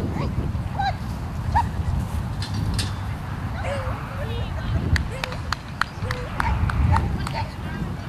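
Open-field ambience at an agility ring: steady wind rumble on the microphone under distant voices and short calls, with a scatter of sharp claps or clicks in the second half.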